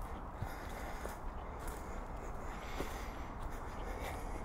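Soft, irregular footsteps and rustling of someone walking a dirt forest trail strewn with dry leaves, over a steady low rumble.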